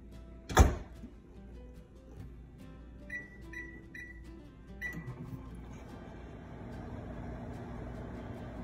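Microwave oven being loaded and started: a loud knock as the door shuts, three short high beeps as the keypad is pressed, then a fourth beep, and the oven begins running with a steady hum.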